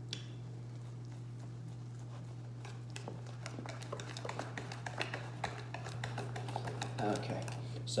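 Rapid, irregular clicking and tapping of a utensil against a bowl as cornbread batter is stirred. It starts about three seconds in and grows busier toward the end, over a steady low hum.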